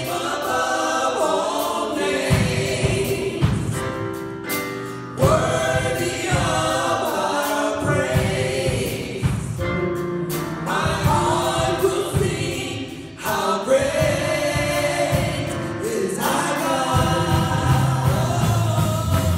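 A small gospel vocal group singing in harmony over a band accompaniment with a steady beat. There are brief breaks between phrases about four and thirteen seconds in.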